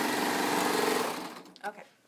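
A Baby Lock serger running at a steady speed, run to clear out what was already loaded in it, then stopping a little over a second in.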